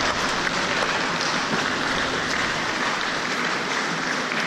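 Steady, even hiss of indoor swimming-pool water noise, with water washing and running in the pool.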